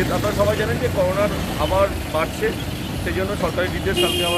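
A man talking over a steady background of street traffic noise.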